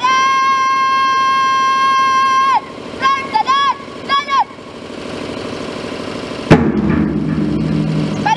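A female cadet shouting drill commands on a parade ground. Her high-pitched voice draws the first word out for about two and a half seconds, then gives three short clipped syllables. About six and a half seconds in there is a single sharp crack, and a second drawn-out command begins near the end.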